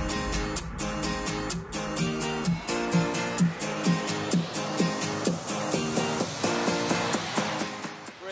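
Music with a steady beat of percussive hits over sustained chords, dipping in level near the end.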